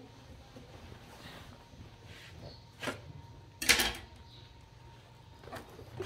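Laundry being handled in a top-loading washing machine drum: a short sound about three seconds in, then a louder rustle just before four seconds, as damp clothes are lifted out. The rest is quiet room tone.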